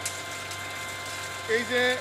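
Steady hum of an electric water pump motor running, left switched on all day to fill the office's rooftop tanks.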